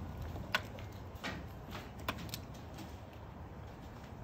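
A few faint, irregular footsteps and knocks on the plywood floor of an enclosed car trailer, over a low background rumble.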